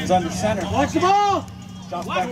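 Speech: spectators' voices calling out, breaking off about a second and a half in.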